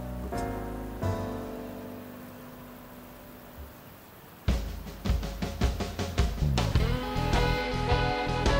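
Background music: a held chord fades away over the first half. About halfway through, a new section comes in with a steady drum beat and bass.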